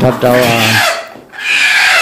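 A chicken being handled gives a drawn-out call, then a raspy squawk near the end.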